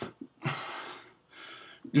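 A man breathing out heavily: a loud exhale about half a second in and a fainter one near the end.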